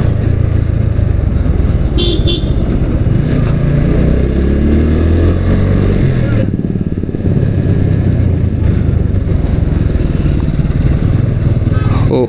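Motorcycle engine running while riding in traffic, its pitch rising midway as it accelerates, with wind noise on the microphone. A short horn toot sounds about two seconds in.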